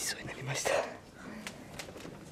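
A man's breathy whisper close to the microphone, one loud rush of breath in the first second, followed by two faint clicks.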